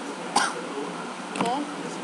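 A woman's voice saying "okay" near the end, after one short sharp sound about a third of a second in, over faint steady room hiss.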